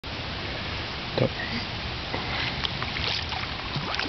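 Water splashing and churning as a hooked alligator gar thrashes at the surface beside the boat, over a steady hiss, with one louder splash or knock about a second in.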